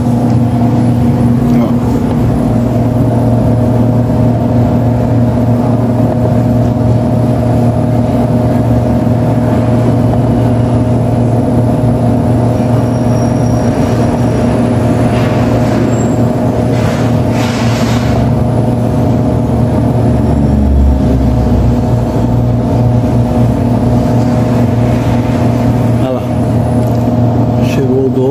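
Automatic churros-forming machine running, its motor giving a loud, steady hum while it extrudes dough with the sweet filling being pumped in. A brief hiss comes through about halfway in.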